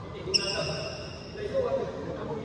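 A sports shoe squeaking sharply on the indoor court floor about a third of a second in, a steady high-pitched squeak that holds for about a second. Voices and a loud burst of sound follow near the end.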